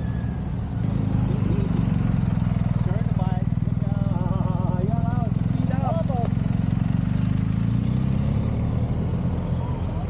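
Motorcycle engine running steadily at low revs close by as the bike rides slowly through a U-turn exercise. The engine sound swells about a second in and eases off near the end.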